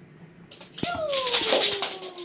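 Border collie giving one long whine that falls in pitch, over a loud burst of rustling that starts about half a second in.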